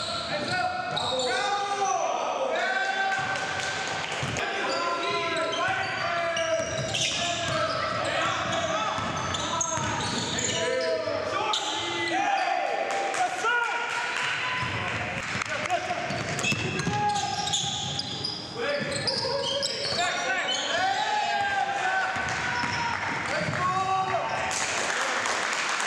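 Live basketball game sound in a large gym: sneakers squeaking on the hardwood court, the ball bouncing, and players' voices calling out, with many squeaks and bounces packed closely together.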